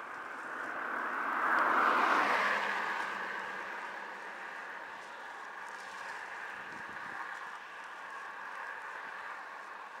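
Steady wind and road noise from a bike ride on a paved road, with a faint steady whine running through it. The noise swells louder about two seconds in, then eases back to a steady level.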